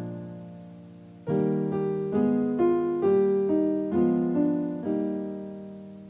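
Piano accompaniment for a vocal warm-up exercise. A struck chord fades, then from about a second in a run of eight even notes settles on a held note that rings away.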